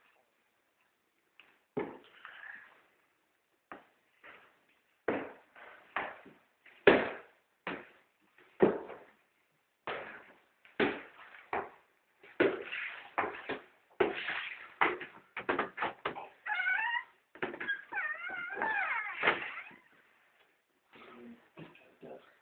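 A cat meowing: a run of short calls, then longer wavering calls near the end.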